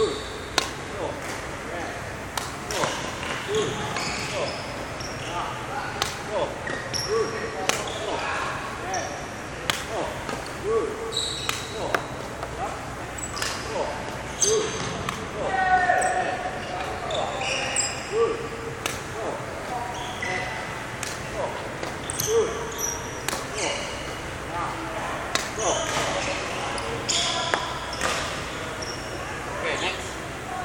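Badminton racket strings striking shuttlecocks during a feeding drill, a sharp hit about every second or so. Between the hits, sneakers squeak on the wooden court.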